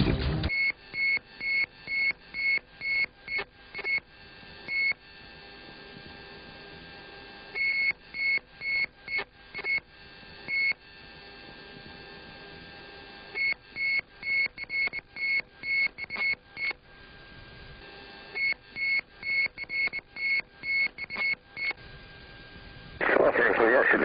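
An aircraft cockpit warning tone beeping about twice a second, in four bursts of three to four seconds with short pauses between, over a steady low hiss on the cockpit radio recording.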